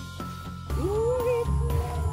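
A single animal-like call about a second in that rises in pitch and holds briefly, over background music.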